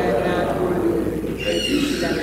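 A man's voice speaking the liturgy at the altar, picked up by the church's microphone: only speech.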